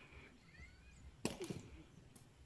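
A sepak takraw ball kicked with a sharp knock, followed a quarter of a second later by a second thud, the ball or the kicker hitting the grass after an overhead back-kick.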